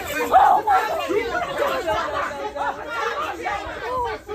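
Several people talking over one another, with no other sound standing out.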